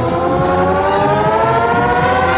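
Television theme music opening with a synthesized electronic tone that rises slowly in pitch, its several overtones gliding upward together, over a low steady pulse.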